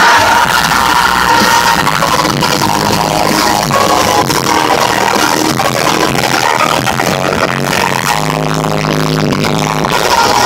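A live rock band playing loud amplified music with electronic synth parts, recorded on a phone from within the crowd, so the sound is harsh and overloaded. Held synth notes ring out steadily near the end.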